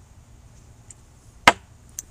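A small white sake cup set down on a wooden table: one sharp knock about one and a half seconds in, with a couple of faint ticks around it.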